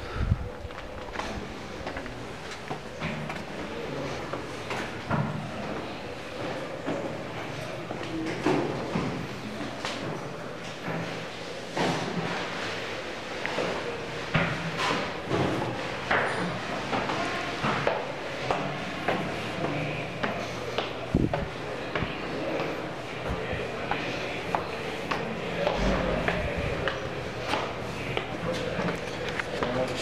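Indistinct voices, with scattered knocks and footsteps, inside a stone building.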